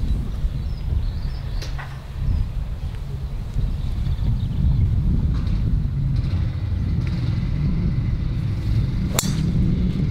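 A golf driver strikes a teed ball once: a single sharp crack about nine seconds in. A steady low rumble runs underneath.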